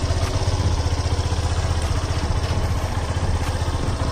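Yamaha FZ-S V2.0's 149 cc single-cylinder four-stroke engine idling steadily.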